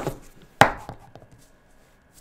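Plastic felt-tip marker pens being set down on paper on a table: one sharp tap a little over half a second in, with a smaller knock at the start and a few faint clicks after.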